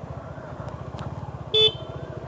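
Suzuki V-Strom SX 250's single-cylinder engine running at low road speed, with a short vehicle horn toot about one and a half seconds in.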